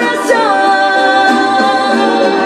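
A woman singing into a microphone over backing music: a short sliding vocal run that settles into one long held note.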